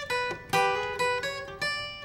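Steel-string acoustic guitar flatpicked with a pick: a slow run of single notes, about five, each left ringing.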